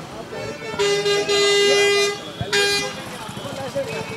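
A vehicle horn honking: one long blast of a little over a second, then a short second honk. Voices and street noise are underneath.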